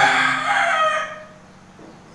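A rooster crowing: one long, loud crow that fades out about a second in.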